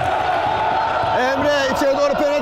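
Indistinct voices in a basketball hall, with a voice calling out in the last second.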